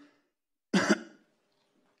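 A single short cough from a man, about a second in.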